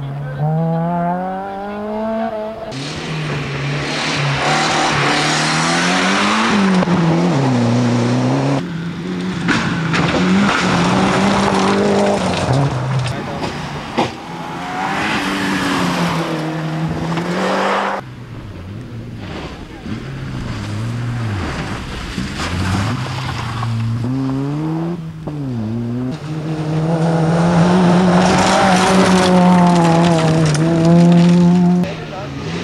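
Small rally cars on a gravel stage, their engines revved hard and climbing and dropping in pitch through gear changes and corners. Loud spells of gravel and tyre noise come as the cars pass close, one car after another.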